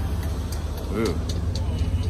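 Steady low rumble, with a man's brief "ooh" about a second in.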